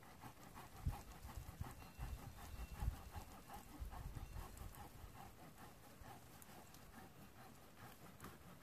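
A dog panting quickly and evenly close by, with a few low thumps in the first few seconds.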